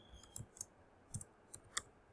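Computer keyboard keys clicking as a few letters are typed: about six short, faint, separate clicks over two seconds.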